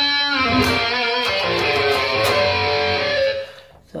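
Distorted electric guitar, an EVH Wolfgang Standard through a HeadRush pedalboard patch with full drive, chorus and the 'Garage' reverb, playing a short lead phrase of sustained picked notes. The last note rings out and fades just before the end.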